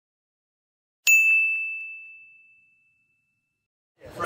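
A single bright notification-bell ding sound effect, striking about a second in and ringing away over about a second and a half.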